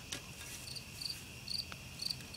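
Crickets chirping faintly: short high chirps repeating about twice a second over a steady high background trill.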